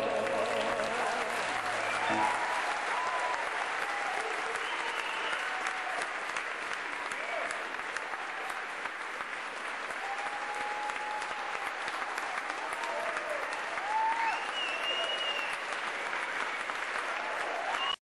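Audience applauding and cheering, with scattered shouts and whistles. The singers' last held note dies away about two seconds in.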